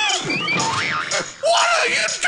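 Cartoon comedy sound effects: a quick string of springy boings and sliding, wobbling whistle-like pitch glides that rise and fall, with a thin musical backing and no bass.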